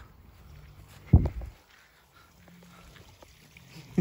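One short vocal sound about a second in, followed by faint background.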